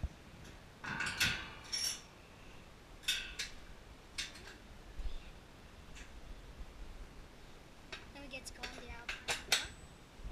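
Metal clinks and clanks from the zip chair's metal lap bar and fittings being handled, in a few short bursts about a second in, around three to four seconds in, and a closer cluster near the end.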